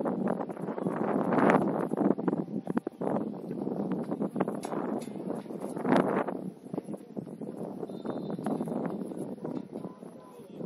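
Wind buffeting the microphone, swelling and dropping in gusts.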